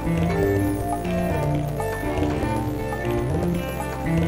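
Instrumental backing beat: music with held bass and melody notes over light percussion in a steady repeating pattern, with no voice.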